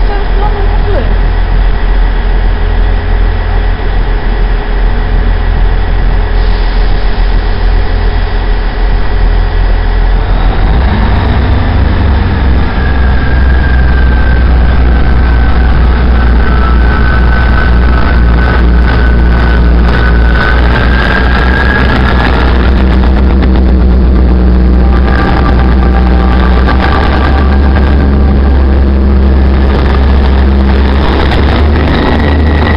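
Diesel multiple unit, a South West Trains Class 159, running close past with its underfloor diesel engines. The engine sound swells about a third of the way in. A long high squeal from the train carries over the middle, and a quick run of clicks and clatter from the wheels follows towards the end.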